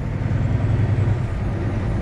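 Cummins ISX diesel engine of a Volvo 780 semi truck running under way, heard inside the cab as a steady low drone with road noise.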